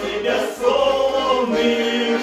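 Several men singing a Russian song together in harmony, with a bayan and a garmon (button accordions) playing along.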